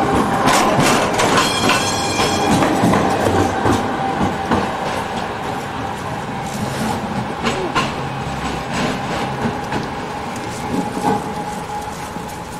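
Croydon Tramlink Bombardier CR4000 tram passing close and pulling away along street track. Its wheels click over the rails most densely in the first few seconds, over a steady whine, and the sound fades as the tram recedes.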